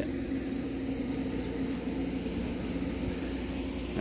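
A steady low mechanical hum, like a motor or engine running, with faint, evenly repeating insect chirps high above it.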